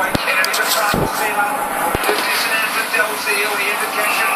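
Aquarium air stone bubbling steadily, a constant crackly fizz of bubbles, with three low thumps in the first two seconds and a voice in the background.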